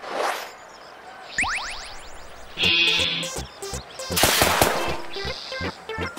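Cartoon soundtrack of music with comic sound effects. There is a short rush at the start, then a quick run of rising whistles, a brief buzz, and a louder rush about four seconds in, over a rhythmic musical beat.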